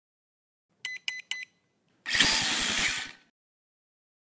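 Logo intro sound effect: three short electronic beeps, then about a second of loud rushing noise with a fast low pulsing that cuts off.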